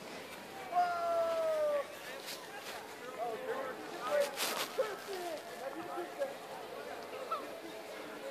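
Voices: a long, drawn-out falling call about a second in, then scattered short calls and chatter, with a brief burst of noise near the middle.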